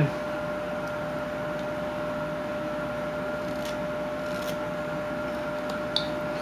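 Steady background hum with a thin constant whine, with a couple of faint scratchy sounds about halfway through.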